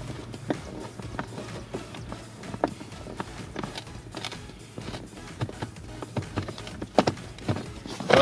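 Scattered, irregular clicks and light knocks of a socket wrench with an 8 mm socket on a long extension, backing out the last screw-type bolt that holds a Ford Edge heater blower motor in place.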